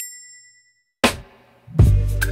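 A bright notification-bell ding from a subscribe-button animation rings out and fades over about a second. It is followed by a short burst of noise that dies away. Music with a heavy bass beat starts near the end.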